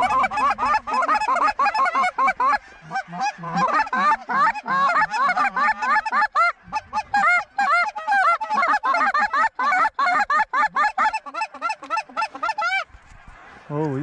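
A large flock of wild geese calling overhead: a dense, continuous clamour of many overlapping honks and yelps that stops abruptly near the end.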